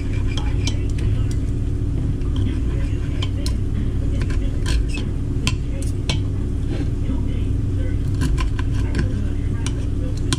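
A knife and fork clicking and scraping against a ceramic plate while cooked liver is sliced, in many short irregular clinks. A steady low hum runs underneath.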